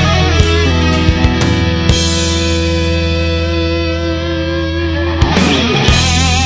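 Instrumental passage of a rock song: electric guitar and band, with sharp drum-like hits in the first two seconds, then notes held steady through the middle. Near the end the pitch sweeps quickly downward.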